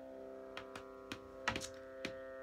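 Sarode strings ringing on in a steady chord of sustained tones, with several light knocks and clicks as the instrument is handled; the loudest knock comes about one and a half seconds in.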